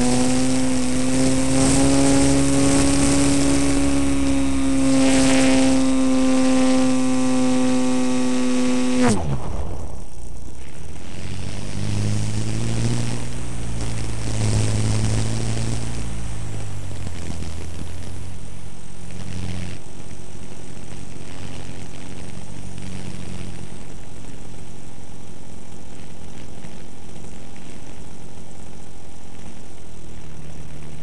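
Engine of a 30% scale Peakmodel Yak 54 radio-controlled aerobatic plane, heard from a camera on board. It runs at high throttle at a steady pitch, is throttled back sharply about nine seconds in, picks up briefly a few seconds later, then settles at low revs.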